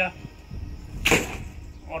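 A 40-pound recurve bow being shot. About a second in, the string is released with one short, sharp snap as the arrow leaves the bow.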